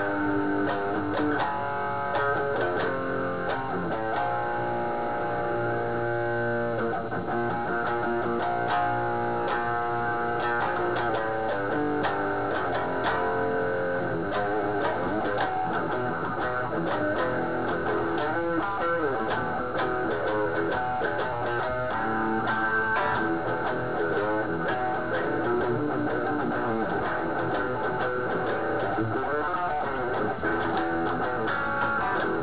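Electric guitar played through an amplifier: picked notes and riffs with held notes ringing, without a pause.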